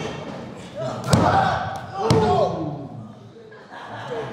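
Two sharp slaps on the canvas of a wrestling ring, about a second apart, each with a short shout.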